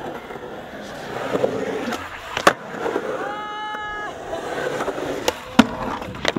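Skateboard wheels rolling over smooth concrete, with sharp clacks from the board about two and a half seconds in and twice near the end.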